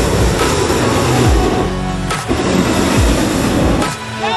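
Hot-air balloon propane burner blasting as it heats the envelope during inflation, a steady roar that eases off near the end. Background music with a thudding beat plays along with it.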